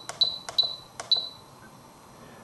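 Spektrum DX7se radio-control transmitter beeping at each press of its select key: three short high beeps, each with a click, in the first second, as the cursor steps along the model-name screen.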